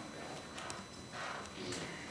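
Faint murmur of voices in a room, with a few light taps like footsteps or knocks.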